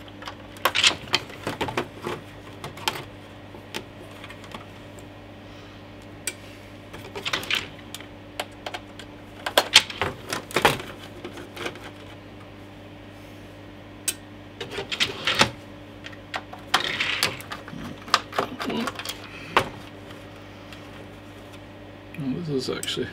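Small screwdriver clicking and ticking as Torx screws are backed out of the plastic case of a Commodore Amiga 500 Plus, with irregular clusters of light clacks from the screws and the case being handled, over a steady low hum.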